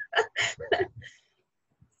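A woman laughing in short, quick bursts for about a second.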